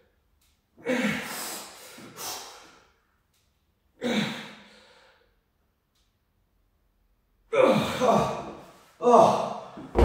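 A man breathing out hard and gasping between reps of a dumbbell shoulder press pushed to failure, about six forceful breaths with a silent pause in the middle, coming faster near the end.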